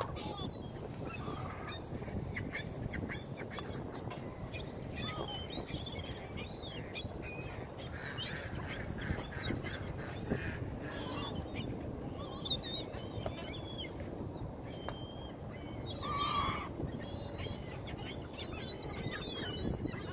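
A flock of ring-billed gulls calling: many short, bending cries scattered throughout, over a steady low background rumble.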